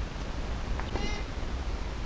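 A tennis racket hits the ball on a serve, a short crack about three-quarters of a second in. A brief high-pitched call follows. Wind rumbles on the microphone throughout.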